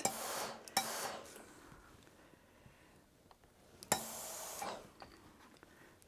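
Soft rubbing and handling sounds as small fabric pieces and a steam iron are moved on a wool pressing mat, with a light knock about a second in and another about four seconds in.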